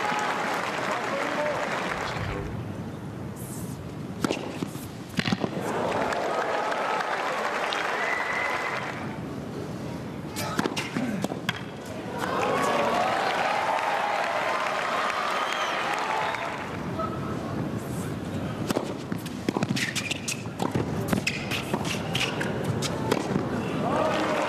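Tennis rallies: sharp racket strikes and ball bounces in quick runs, mostly in the second half. Between the points there are stretches of crowd noise and voices in the arena.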